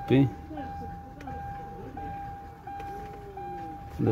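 A steady, high electronic warning tone, broken by a brief gap about every 0.7 seconds, sounding throughout, with a short burst of voice at the start.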